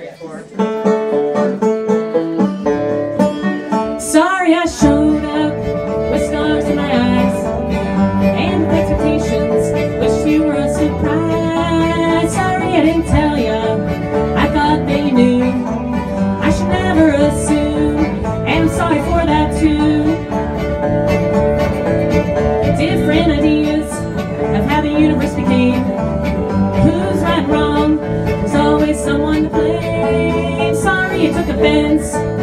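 Bluegrass band playing live: banjo, acoustic guitar and fiddle, with electric bass coming in about five seconds in.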